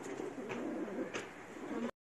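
Cats fighting, with a low wavering growl-yowl and two short sharp noises, about half a second and just over a second in. The sound cuts off suddenly just before the end.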